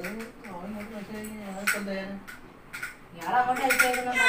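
People talking, with a few light clicks or clinks scattered through the talk.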